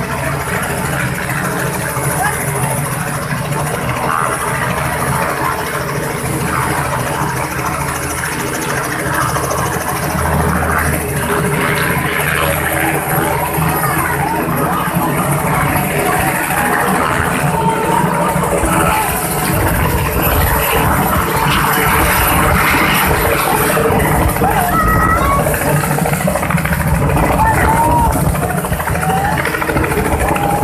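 Small two-bladed helicopter running up and lifting off, its engine and rotor a steady low rumble. From about two-thirds of the way through, the rotor downwash buffets the microphone heavily.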